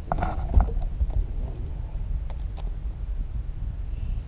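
Low, steady rumble of wind buffeting the microphone, with a few short clicks and knocks from the boat and tackle as a small bass is brought aboard.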